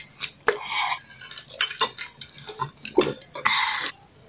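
A thin plastic water bottle being handled, with irregular sharp clicks and crackles as the plastic flexes and the cap is twisted, and a short burst of hiss near the end.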